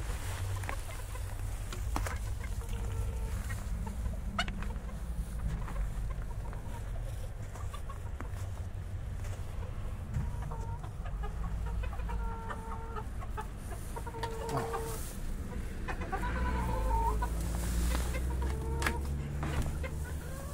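Chickens clucking: short calls scattered through, coming more often in the second half, over a low steady rumble.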